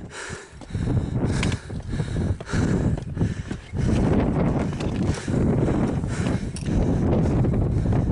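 Wind buffeting the microphone in uneven gusts, with a few scattered footsteps and scuffs on stone steps.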